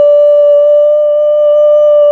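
A woman's voice holding one long, steady sung note, unaccompanied.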